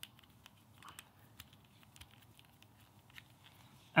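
Faint, scattered small clicks and ticks of a GoPro Hero 10 being handled and screwed into a strap mount with its thumbscrew.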